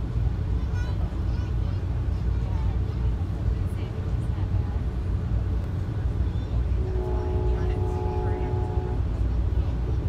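Steady low rumble of a passenger train coach rolling at speed, heard from inside the car. From about 7 to 9 s a train horn sounds one steady chord for about two seconds, muffled through the car body.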